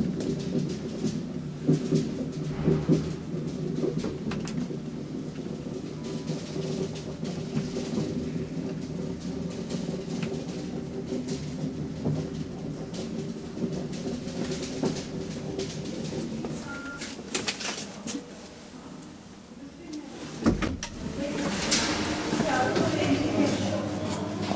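ASEA Graham traction elevator car travelling down, with a steady hum of several tones from the machine and car. The hum fades as the car slows about seventeen seconds in, a clunk comes as it stops, and clattering follows near the end.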